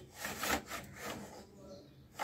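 Plastic toy dollhouse elevator cabin sliding down its shaft: a scraping, rubbing noise in a few uneven strokes, loudest about half a second in and fading toward the end.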